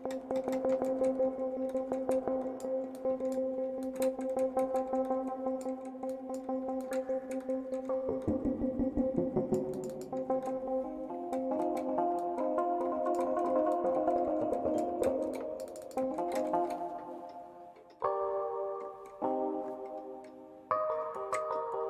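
Ableton Live's Electric, a physically modelled electric piano, sounding a held two-note interval, then shifting notes and several struck chords near the end. Short clicks are scattered over the tones while its mallet-noise settings are being adjusted.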